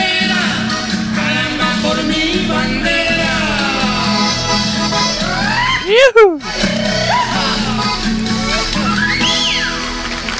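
Live Chilean cueca played on button accordion and guitar, with loud gliding cries from the performers over the music, the loudest rising and falling steeply about six seconds in and a shorter one near the end.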